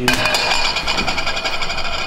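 A sudden, loud, rapid mechanical rattling noise with a high ringing tone over it starts at once and runs on steadily.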